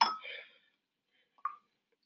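A man's voice trailing off at the end of a spoken word, then quiet room tone with a single brief faint sound about one and a half seconds in.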